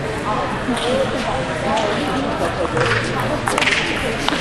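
Table tennis ball being served and rallied, sharp clicks of the ball off the paddles and the table over a background of chatting voices.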